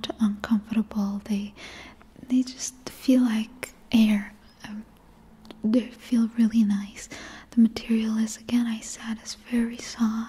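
Only speech: a woman whispering close to the microphone in short phrases.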